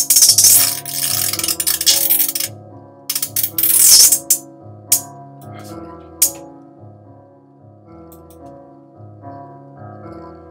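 A looping piano melody from a drum-machine sequencer with a hi-hat sample over it: fast hi-hat rolls of rapid repeated ticks in the first few seconds, then a few single hi-hat hits.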